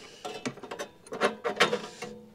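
A hand tool working on the plastic drain plug of an Atwood aluminum RV water heater tank to loosen it: a run of irregular sharp clicks and scrapes.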